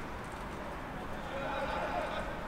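Players' voices shouting at a rugby lineout, starting a little over halfway through, over steady open-air background noise.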